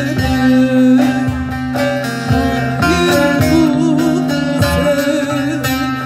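Live Turkish folk music played by a small ensemble of plucked long-necked lutes (bağlama) and acoustic guitar over a steady low drone, with a wavering melody line and regular plucked strokes.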